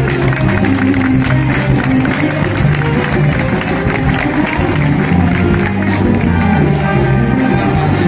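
A big band playing live, with trumpets over stepping low bass notes and a steady beat.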